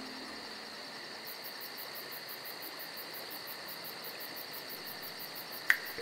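Quiet, high-pitched insect chirping in an even, rapid pulse of about four or five beats a second over a steady hiss, with one short sharp click near the end.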